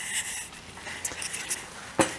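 Faint rustling and light scraping, like hands or clothing moving near the microphone, with a few small ticks and a sharp click at the very end.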